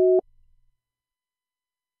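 Busy tone of a call that is not going through: a steady two-pitch beep, the end of one repeating pulse, cutting off a fraction of a second in.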